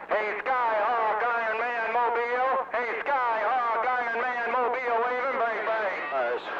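A strong transmission breaks through the hiss of a CB radio receiver: a loud, warbling, sing-song pitched sound that wavers up and down with short breaks, music-like rather than plain talk, heard through the radio's speaker.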